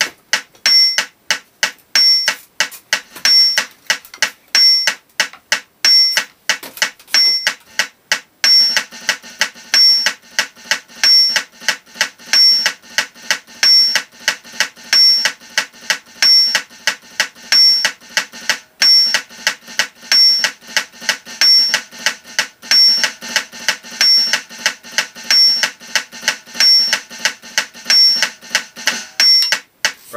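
Drumsticks playing fast, even strokes on an electronic drum kit's snare pad against a metronome beeping at 185 bpm. The strokes grow denser and fuller from about eight seconds in.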